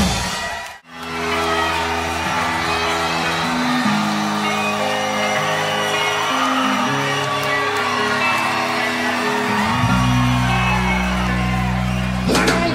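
Live rock band: the full band stops abruptly under a second in, then held notes and chords ring on without drums for several seconds, and the bass and drums kick back in about ten seconds in.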